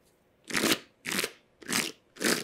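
A tarot deck being overhand-shuffled by hand: three short rustling strokes of cards sliding off the deck, about two a second, starting about half a second in.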